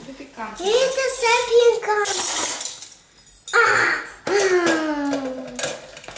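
A young child's voice: two drawn-out, high-pitched vocal sounds, with a short hiss between them.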